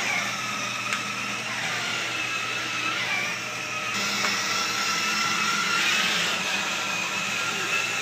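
Battery-powered children's ride-on toy car driven by remote control, its electric drive motors whirring steadily as it moves across a tiled floor.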